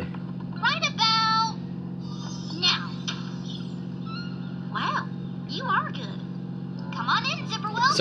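Steady low electrical-sounding hum, unchanging throughout, under scattered cartoon dialogue: background noise that cannot be switched off.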